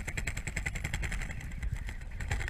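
A boat's motor heard through the water: a rapid, even train of clicks.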